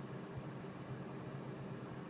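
Steady low hum and hiss inside a parked car's cabin with the engine idling.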